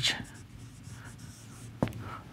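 Marker pen writing on a whiteboard: faint scratchy strokes as a word is written, with a single sharp tick near the end.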